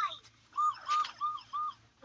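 Four short, high chirps in an even series, about three a second.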